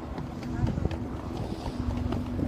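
Wind rumbling on a phone's microphone outdoors, with a steady low hum and faint voices in the background.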